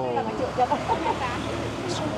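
People talking, with words the recogniser did not catch, over a steady background hum of street noise.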